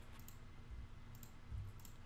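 Faint computer mouse clicks over quiet room tone.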